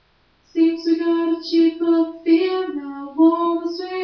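A young woman's voice singing unaccompanied, coming in about half a second in after a brief silent gap, with a run of held notes.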